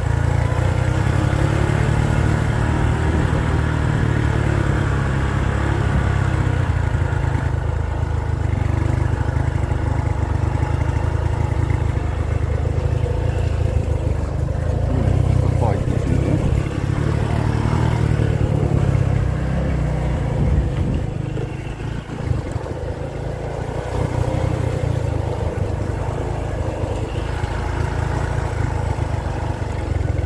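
Motor scooter engine running as it carries riders along, with a heavy wind rumble on the microphone; the sound drops briefly about two-thirds of the way in.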